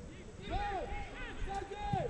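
Two distant shouted calls from players on the pitch, each high and held before falling away, carrying across an empty stadium with no crowd noise.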